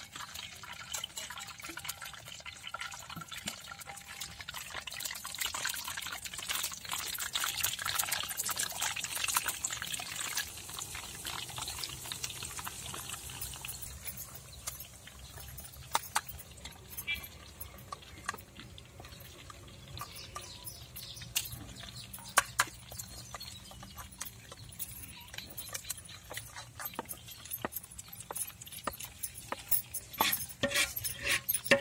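Boondi batter dripping through a perforated ladle into hot oil in a kadai, sizzling and crackling as the drops fry, loudest in the first half. A few sharp clicks stand out in the second half.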